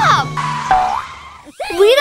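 Cartoon 'boing' sound effect: a springy pitch that swoops up and back down at the start, followed by a short held tone that fades away. Bright children's background music comes in near the end.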